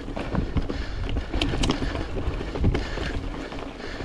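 Mountain bike riding down a rocky trail: tyres rolling over loose stones with a scatter of knocks and rattles from the bike as it hits rocks, over a steady rush of wind on the microphone.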